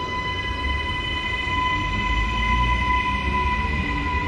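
Electric suburban train at a station platform, giving a steady high electrical whine over a low rumble.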